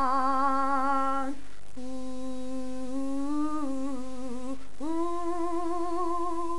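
A woman's unaccompanied voice singing wordless held notes with vibrato, in three phrases: a long note that breaks off just after a second in, a line of stepping notes in the middle, and a higher held note from about five seconds in.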